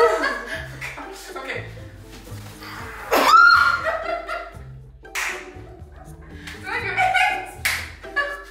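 Background music under women laughing and shrieking, with a loud rising shriek about three seconds in as the loudest sound. A sharp slap comes near the end.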